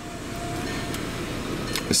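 Electric sunroof motor of a 2012 Volkswagen Eos sliding the glass roof panel back: a steady motor hum with a faint whine.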